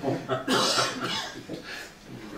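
A person coughing, loudest about half a second in, with a couple of smaller bursts after.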